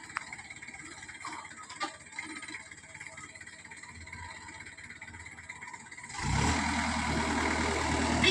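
A 4x4 Jeep's engine comes in suddenly about six seconds in and runs loud and steady with a low note. Before that there is only a quiet background with a few faint clicks.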